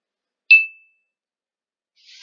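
A single short, high-pitched electronic ding about half a second in, fading out quickly: a computer notification sound.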